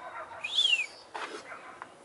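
A bird's single short call, a quick falling whistle, about half a second in, followed a little later by a brief soft rustle.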